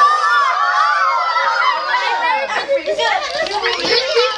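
A group of children exclaiming and chattering over one another in excitement, many high voices overlapping with no single clear speaker.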